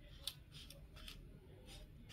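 Faint scratchy strokes of a felt-tip marker on paper, about six short strokes in two seconds, as the marker scribbles back and forth.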